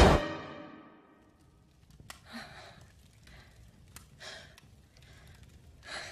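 A loud swell of score dies away at the start. After a near-silent pause, a young woman breathes heavily as she comes to, with three breathy sighs about two seconds apart.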